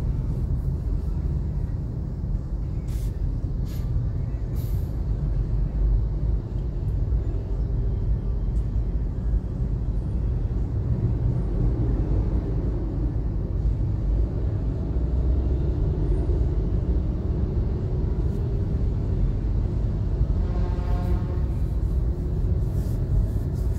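Steady low rumble of an idling car and the surrounding stop-and-go traffic, heard from inside the car's cabin. A brief pitched tone from another vehicle sounds near the end.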